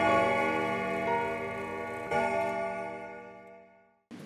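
The closing notes of a title jingle: sustained, bell-like chime tones with a fresh strike about two seconds in, over a clock-like ticking, fading out to silence by the end.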